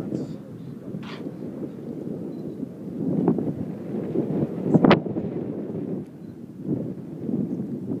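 Wind buffeting the microphone in a steady low rumble, with a sharp knock a little before five seconds in.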